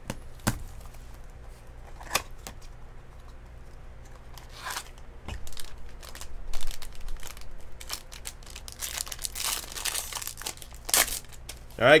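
Foil wrapper of a Topps Triple Threads baseball card pack being torn open and crinkled by hand, in scattered rustles that grow into a dense stretch of crinkling near the end.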